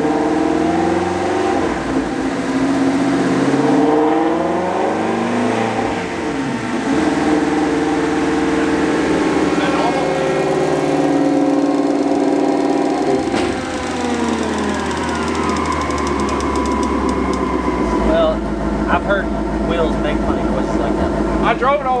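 Twin-turbocharged Ford Shelby GT350 V8 making a full-throttle pull on a chassis dyno at about nine pounds of boost. The engine pitch climbs, drops once about six seconds in, climbs again, then falls away from about thirteen seconds in as the engine comes off the throttle and coasts down.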